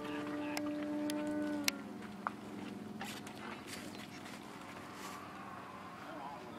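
A radio-controlled model floatplane's motor drones steadily in the air, then is throttled back about two seconds in: the pitch sags and it goes quieter and lower, as if setting up to land.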